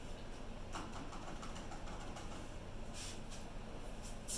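Faint scattered clicks and light taps of small objects being handled, over a steady low hum of room noise.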